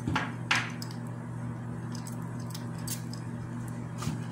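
A perfume bottle's atomizer gives one short spray hiss about half a second in, applying a single spray of eau de parfum to the wrist. Light clinks of the glass bottle being handled follow, over a steady low hum.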